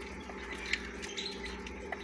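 A few faint, short peeps from young quail chicks over a steady low hum.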